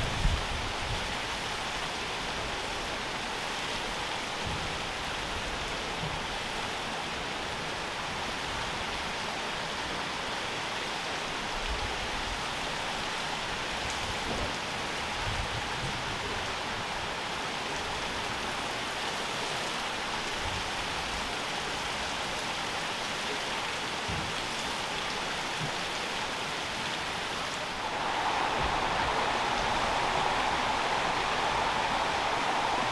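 Steady rush of water running and splashing through the Great Laxey Wheel, an even noise with no pitch or rhythm. It grows louder and brighter near the end.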